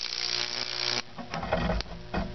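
High-voltage discharge from a microwave transformer arcing and burning into wet cedar at a nail electrode: a dense crackling hiss for about a second that then cuts off. A few faint clicks and a low electrical hum follow.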